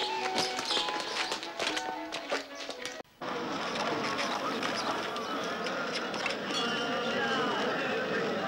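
Orchestral film music with held notes that cuts off abruptly about three seconds in. It is followed by the din of a large crowd, with many voices talking and calling at once.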